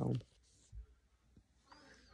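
A short vocal sound from the eater at the start, then faint clicks and a soft thump, and near the end a brief squeaky scrape of a plastic spoon in a plastic cup of laundry starch lumps.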